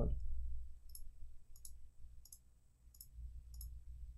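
Computer mouse clicking about five times, roughly one click every two-thirds of a second, over a steady low electrical hum.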